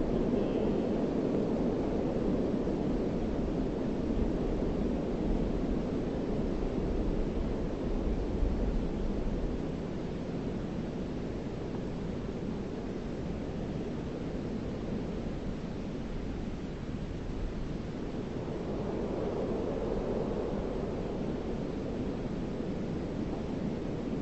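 A steady, low rushing noise drone, like wind or distant surf, with no tones or beats in it. It eases a little about ten seconds in.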